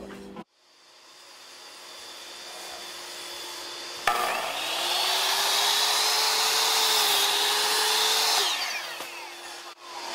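A Ryobi miter saw is switched on about four seconds in. Its motor spins up with a rising whine and the blade cuts through a piece of wood at an angle for about four seconds, then the motor winds down near the end.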